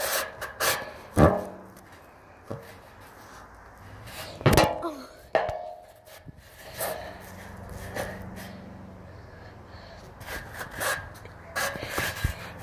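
Scattered knocks and thumps, the loudest about a second in and again about four and a half seconds in, with quieter handling noise between.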